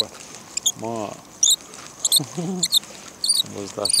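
A small bird giving short, high chirps over and over, one or two a second. Two brief low voice sounds from a man come in between.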